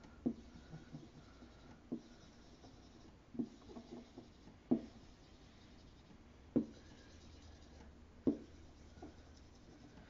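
Dry-erase marker drawing circles on a whiteboard: a faint scratchy rubbing of the tip on the board, with a sharp tap each time the marker meets the board to start a circle, about six times.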